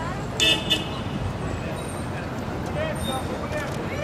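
A vehicle horn gives a quick double toot about half a second in, over the steady noise of street traffic and a crowd's distant chatter.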